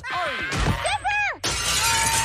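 A cartoon character speaking, then, about one and a half seconds in, a sudden loud shattering crash sound effect.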